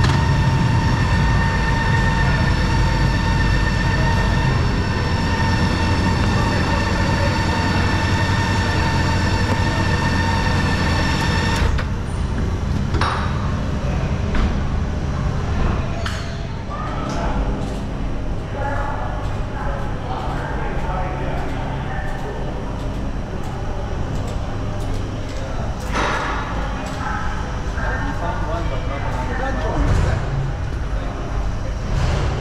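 BMW touring motorcycle's engine idling with a steady rumble and a high whine, switched off suddenly about twelve seconds in. After that there are voices and scattered knocks on the ferry's car deck as the bikes are strapped down.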